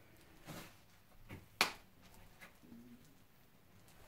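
Quiet sounds of a person moving and turning: a few soft rustles and one sharp click about one and a half seconds in.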